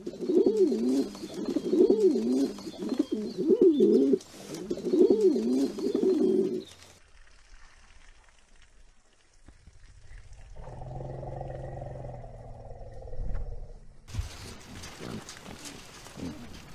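Domestic pigeons cooing over and over, each coo swelling and falling in pitch, for about the first seven seconds. After that it goes much quieter, with a low, drawn-out rumble partway through. Noisy, irregular rustling starts near the end.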